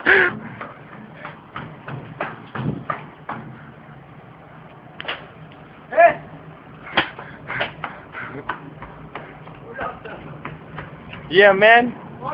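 Brief indistinct voice sounds and scattered clicks over a low steady hum, with a voice starting to talk near the end.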